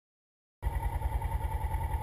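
Sport motorcycle engine idling with a steady, even pulse, starting about half a second in.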